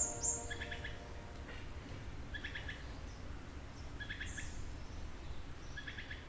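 A bird calling outdoors: a short, clustered call repeated about every two seconds over a low ambient rumble, with a few high chirps right at the start.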